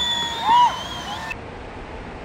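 High-pitched whoops and shouts from onlookers, loudest about half a second in, over the steady rush of a large waterfall. A little past a second in, the shouting cuts off and only the rushing water remains.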